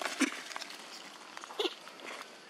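Macaque monkeys giving two short calls, one just after the start and one near the end, over faint background rustling.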